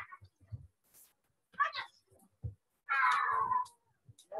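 A drawn-out high-pitched cry, just under a second long, about three seconds in, falling in pitch as it ends, preceded by a few short faint sounds.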